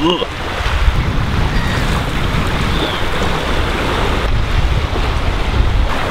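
Wind buffeting the microphone in a steady low rumble, over the even wash of small sea waves breaking on the shore.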